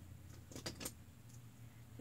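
A few faint, quick clicks and rattles of small hard plastic and metal-bearing fidget spinners knocking together as they are handled, about half a second to a second in.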